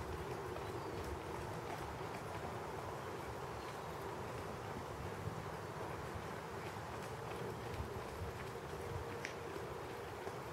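Faint hoofbeats of a ridden horse moving over a sand arena, heard over a steady outdoor background noise.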